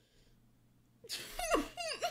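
Near silence, then from about a second in a few short, high-pitched whimpering cries that fall in pitch.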